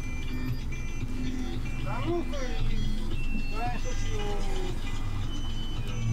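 Inside a moving city bus: the steady low running of the bus under music playing, with a voice speaking twice.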